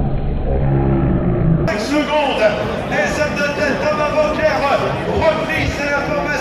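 A car's engine rumbling low as it drives past, then, after a sudden cut about a second and a half in, several people's voices talking close by.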